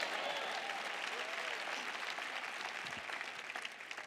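A large audience applauding, with a few voices calling out near the start; the applause gradually dies down.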